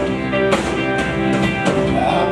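Live band playing an instrumental stretch of a rock song: guitars, violin and keyboards over a drum kit keeping a steady beat, with no vocals.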